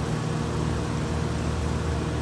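Steady low mechanical hum with a few steady tones in it, running without change.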